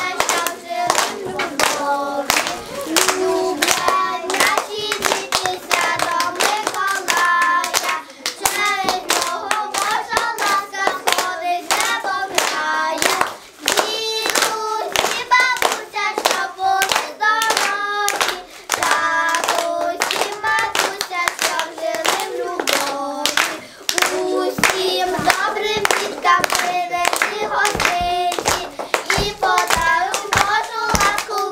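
Group of young girls singing a song together, with hands clapping along in a steady rhythm.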